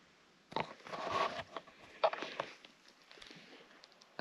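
Footsteps on rocky, gravelly ground: a few scuffing, crunching steps, starting about half a second in.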